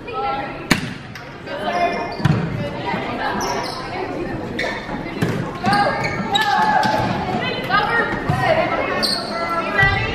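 Volleyball play in a reverberant gymnasium: a sharp smack of the ball about a second in, then more hits through the rally, with players and spectators calling out and shouting, loudest in the second half.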